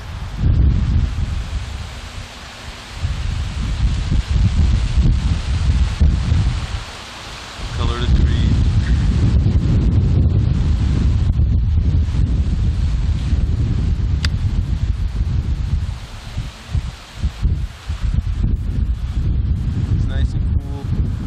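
Wind buffeting the camcorder's microphone outdoors: a loud, low rumble that comes in gusts and eases off briefly a few times.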